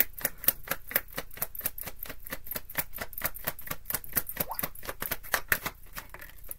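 Deck of tarot cards being shuffled in the hands: a steady run of quick card clicks, about six a second.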